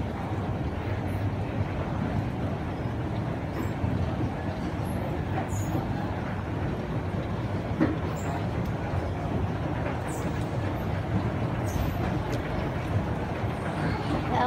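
Fujitec escalator running: a steady mechanical rumble from the moving steps and drive, with a single click about eight seconds in.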